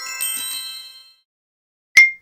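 The last bell-like notes of a tinkly intro jingle ring out and fade away by about a second in. Near the end comes a single short, sharp ding.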